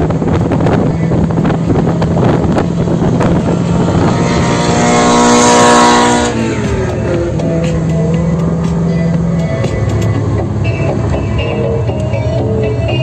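Car cabin at highway speed with steady road and wind noise and a low engine drone. A Ferrari convertible's engine note swells loud as it draws alongside, peaks about six seconds in, then cuts off and falls away in pitch as it moves past.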